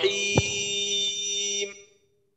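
A held recited vowel sustained on one steady pitch, then fading out about a second and a half in. There is a faint click about half a second in.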